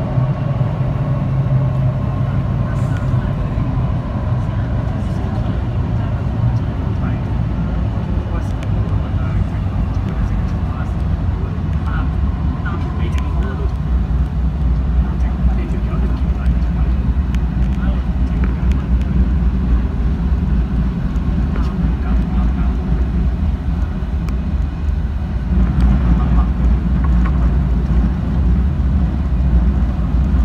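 MTR South Island Line train running through a tunnel, heard from inside the car: a steady low rumble of wheels on track, with a whine that falls in pitch over the first few seconds. The rumble grows louder in the last few seconds.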